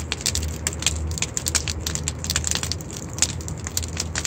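Wood bonfire burning with many irregular crackles and pops, over a steady low rumble.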